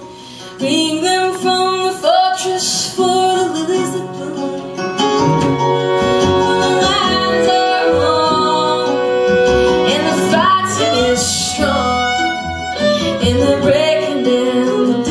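Live folk song: a woman sings over her archtop acoustic guitar, with a bowed cello underneath.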